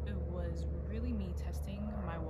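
A woman's voice in short, soft phrases that the transcript does not catch, over a steady low background hum.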